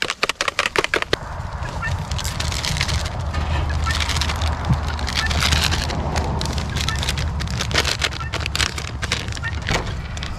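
A fork whisking beaten eggs in a plastic bowl, a fast clatter of clicks that stops about a second in. A steady low rumble and hiss then runs on, with faint scattered sounds in it.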